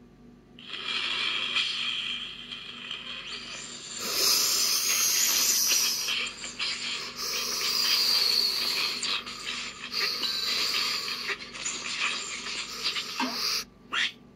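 Cartoon sound effects: a long hissing rush with many rapid clicks and rattles through it, over faint music.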